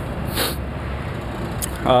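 Steady low room rumble, with a short hiss about half a second in and a faint click later. A man's voice starts speaking near the end.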